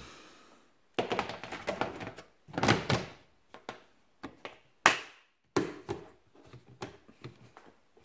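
Lid of a plastic storage-bin sandblasting cabinet being set in place and its clip latches snapped shut: a run of plastic thunks and clicks, with one sharp snap about five seconds in.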